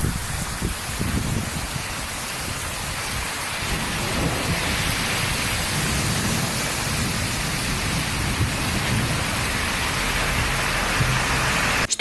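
Torrential rain pouring down on a street: a steady, dense hiss with a low rumble underneath.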